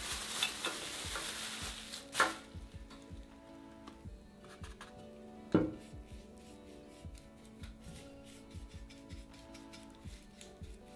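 A small chip brush scratching and dabbing a thick PVA glue and chalk paint mix onto a glossy ceramic urn, a rough hiss for the first two seconds that then drops to quieter ticking dabs. A sharp knock comes about two seconds in and another about halfway through.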